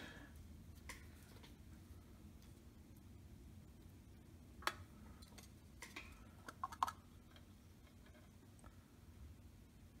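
Near silence with a low room hum, broken by a few light clicks and taps from small wooden parts and plastic film being handled on a workbench: one a little before halfway, and a short cluster about two-thirds through.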